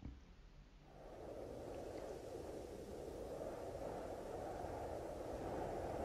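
Cold wind sound effect playing back: a quiet, steady wind noise that comes in about a second in, with a wintry, frosty sound.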